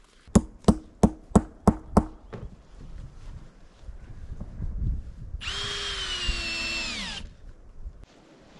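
Six sharp knocks in quick succession, blows from an axe, then a cordless drill driving a large-head screw through artificial turf to hold it down. The drill whines steadily for under two seconds and its pitch drops just before it stops, as the screw seats.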